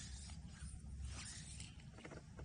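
Soft swishing and rustling as a fly rod and its line are handled, with two longer swishes about a second apart over a low steady rumble.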